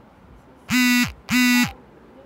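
Two loud, buzzy honks of one steady pitch, each about a third of a second long, the second following half a second after the first.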